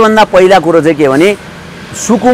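Only speech: a man talking, with a short pause a little past halfway where a steady background noise remains.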